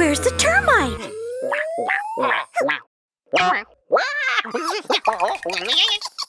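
Rock band music in a cartoon cuts off about a second in. A rising cartoon sound-effect glide follows, then a cartoon character's wordless, wobbling voice sounds broken by short pauses.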